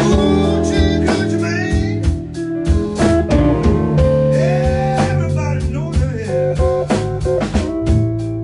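Live blues band playing: electric guitars, electric bass and drum kit, with a lead guitar line whose notes glide in pitch over a steady beat.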